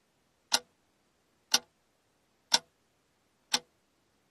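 Ticking clock sound effect for a quiz countdown timer: four sharp ticks, one each second, with silence between.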